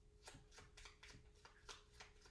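Game cards being drawn from a deck and handled: a run of about eight faint, sharp card clicks at irregular spacing.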